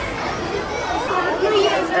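Indistinct chatter of several voices talking over one another in a crowd, children's voices among them.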